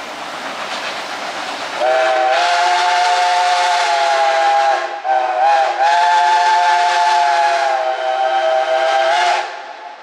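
Steam whistle of locomotive 76, a 1940 ČKD 0-4-0T tank engine, blowing a long chord-like blast of about three seconds, a brief wavering dip, then a second long blast of about three and a half seconds. Before the whistle, the approaching train's running sound is softer.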